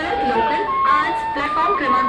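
End-blown bamboo flute playing a slow melody of long held notes that step up and down, over the chatter of a crowd.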